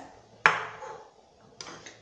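A serving bowl set down on a kitchen countertop: one sharp knock about half a second in, then a fainter brief knock near the end.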